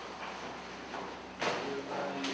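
A person rolling over on a tiled stairwell floor, clothing rustling against the tiles and wall, with a sudden louder knock of the body on the floor about one and a half seconds in.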